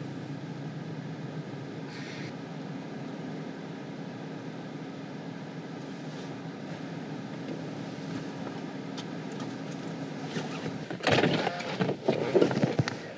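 Parked car's engine idling with a low, steady hum. About eleven seconds in, a burst of loud knocks and clatter breaks in.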